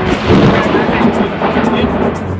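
Loud thunder, starting suddenly and rumbling on.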